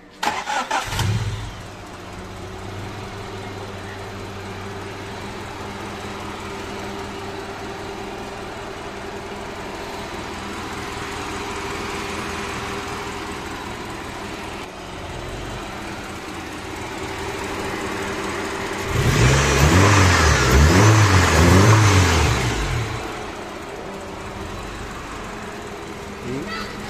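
1996 Honda Civic four-cylinder petrol engine starting: it cranks briefly and catches right away, then idles steadily. Near the end it is revved several times in quick succession, rising and falling, before settling back to idle.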